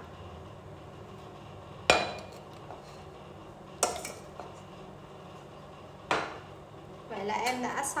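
Metal kitchenware knocking: three sharp clinks about two seconds apart, each ringing briefly, as a cooking pot and mesh strainer are handled and set down after straining agar jelly.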